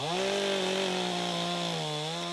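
Petrol chainsaw revved up and running at high speed with a steady, high-pitched note. Near the end the pitch dips slightly as the chain bites into a fallen tree trunk.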